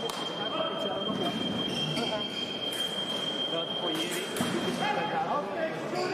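Voices in a large, echoing sports hall, with a steady high-pitched electronic tone under them that cuts off about five seconds in, and a few light clicks.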